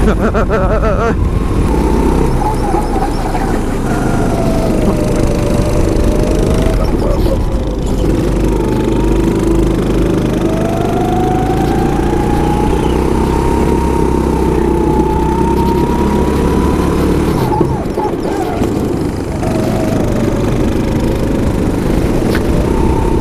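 Go-kart engine running flat out from the driver's seat, its note rising and falling with the kart's speed through the corners: a long climb in pitch through the middle, then a drop near the end as the throttle comes off.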